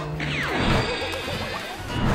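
A comic editing sound effect over background music: a whistle-like tone gliding steeply down in pitch over about half a second, soon after the start.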